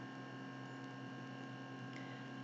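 Faint, steady electrical hum with a light hiss from the recording chain, several constant tones and nothing else.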